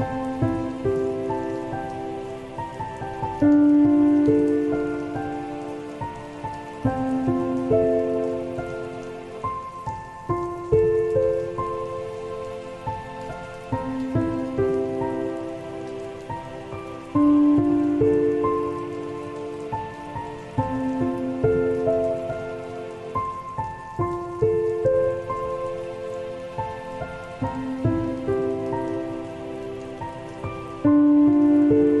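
Slow solo piano melody, notes and chords sounding about once a second and fading away, over a steady ambience of falling rain.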